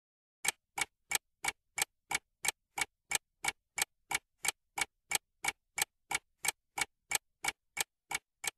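Clock-style ticking sound effect marking a quiz countdown timer: short, evenly spaced ticks, about three a second, starting about half a second in.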